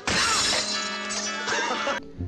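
Film soundtrack: a sudden crash at the start, then music holding a sustained, many-toned chord.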